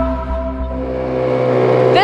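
Sustained background music tones fade out during the first second or so. As they go, the steady hum of a small boat's engine takes over and carries on.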